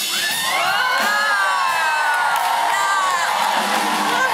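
Concert audience cheering and screaming just after a song ends, with many high-pitched whoops over a steady roar.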